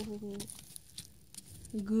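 A few faint crunching hoof steps of a horse walking over snow and ice, between a woman's drawn-out "oh" at the start and her "good" near the end.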